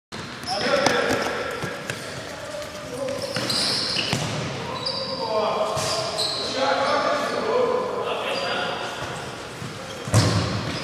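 Indoor futsal game: players shouting to one another over the knocks of the ball being kicked and bounced on the court, echoing in a large hall.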